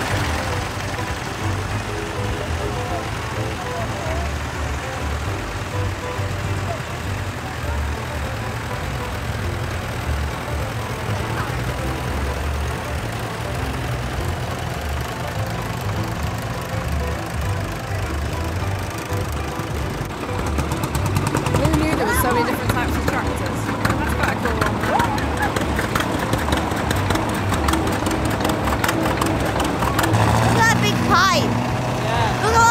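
Vintage tractor engines running at a slow, uneven low throb as the tractors drive past one after another, with voices and music in the background.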